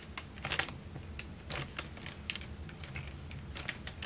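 Irregular light clicks and taps of fingers and fingernails on a silicone-filled plastic food container as it is pressed and pushed to work it free from the paper beneath.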